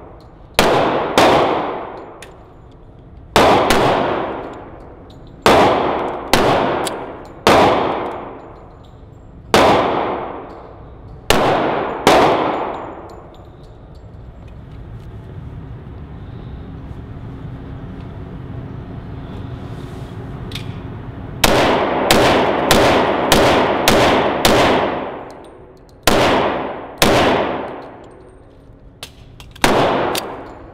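Semi-automatic pistol firing, each shot ringing with a long echo off the walls of an indoor range. The shots come irregularly, often in close pairs, through the first dozen seconds. After a pause of about eight seconds comes a quicker, even string of about two shots a second.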